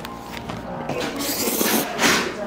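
A person slurping a mouthful of japchae (glass noodles) with a hissing suck, loudest over the second half, over soft background music.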